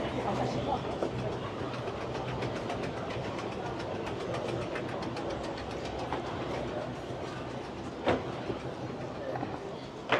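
Mall escalator running, a steady low hum with a fast, even clacking from its steps, over the murmur of shoppers' voices. A single sharp knock sounds about eight seconds in.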